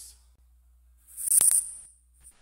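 Near silence, then about a second in a short loud burst of high hiss with two sharp clicks close together, fading out near the end: a switching noise as recorded video playback starts.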